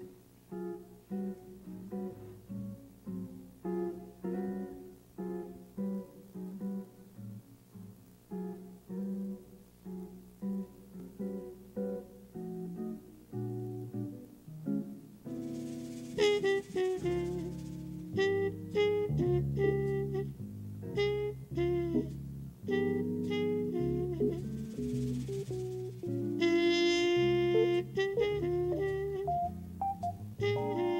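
Live small-group jazz: an archtop jazz guitar plays alone in a lilting run of plucked notes and chords, and about halfway through the full band comes in louder, with bass, drums and a trumpet line.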